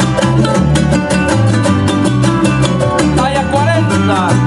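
Son jarocho ensemble playing an instrumental passage live: jaranas strummed in a fast, steady rhythm over plucked upright bass notes.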